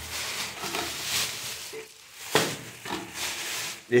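Thin plastic carrier bag rustling and crinkling in several short bursts as it is handled and opened.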